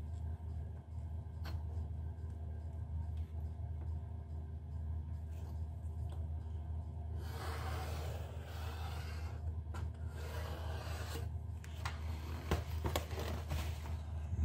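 Felt-tip pen scratching along a steel ruler on corrugated cardboard as a line is marked, for about two seconds in the middle, with a few light knocks of the ruler on the card. A steady low hum sits underneath.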